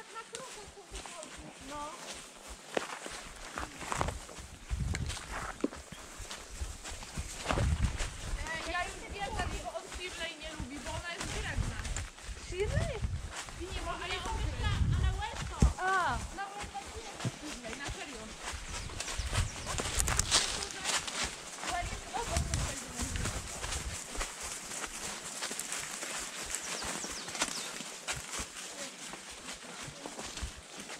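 A horse walking on a forest track, its hooves clopping and scuffing through dry fallen leaves in an uneven run of small ticks and crunches. Patches of low rumbling on the microphone come and go in the first half.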